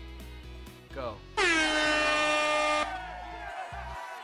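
Air-horn sound effect from an online duck-race game, sounding once for about a second and a half as the race starts, over background music.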